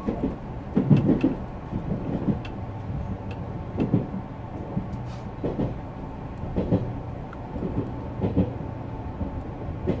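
A JR Central Series 383 tilting electric train running along the line, heard from inside at the front: a steady low running rumble and hum with irregular dull knocks about once a second.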